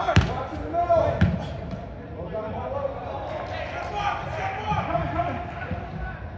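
A soccer ball is kicked twice: two sharp thuds about a second apart near the start, with players' voices calling around them.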